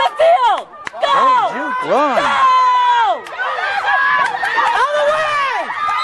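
Spectators shouting and screaming from the sideline: several high-pitched voices in long, drawn-out calls that rise and fall, at times overlapping.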